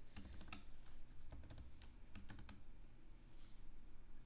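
Typing on a computer keyboard: a scattered handful of faint keystrokes, most of them in the first two and a half seconds.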